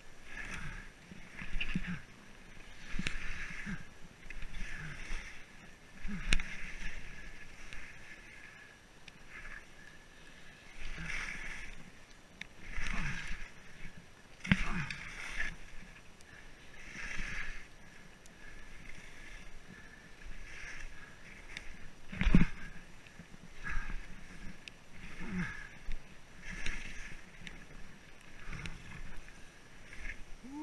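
Skis swishing through powder snow in a run of turns, one swish every couple of seconds, with a louder thump about three-quarters of the way through.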